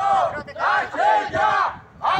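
Protest crowd chanting a slogan in unison, in about four loud shouted beats that die away near the end.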